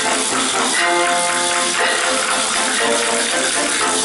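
A children's percussion ensemble playing hand percussion, wooden plate rattles and small jingling instruments among them, over a sustained pitched melody.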